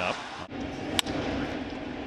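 A single sharp crack of a bat hitting a pitched baseball, over a steady low hum of ballpark ambience.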